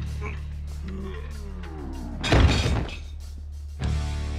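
Movie fight sound effects over a low, droning music score: a loud crash like something shattering about halfway through, then a sharp hit near the end.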